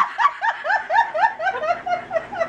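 A woman laughing hard: a quick run of about ten high-pitched "ha" pulses, around five a second, tapering off near the end.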